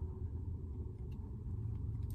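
Steady low rumble of a car engine idling, heard inside the car's cabin.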